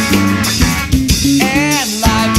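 Punk rock song playing: a full band with drums and electric guitars. In the second half the drums thin out under a short run of held and sliding notes, and the full band comes back in at the end.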